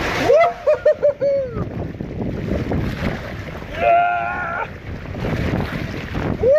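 Water rushing and splashing down a water slide around a rider, heard close up from a phone held in the spray. A few short pitched sounds break through near the start, and a longer one comes about four seconds in.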